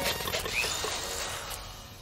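Cartoon sound effects of a flurry of tool work: a noisy clatter with a few knocks near the start, fading away over about two seconds.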